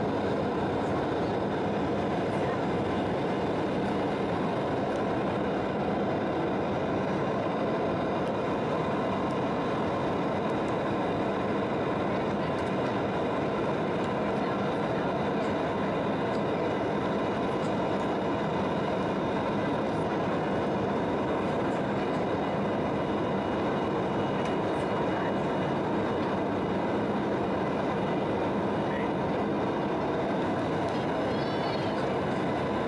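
Steady cabin noise of an Embraer 170 in flight, heard from a seat by the wing: the drone of its twin GE CF34 turbofans and the rush of airflow, with faint steady engine tones and no change in pitch or level.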